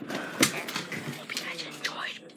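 A boy's voice right at the microphone, mumbling or half-whispering indistinctly, with a few sharp knocks from the handheld device being handled.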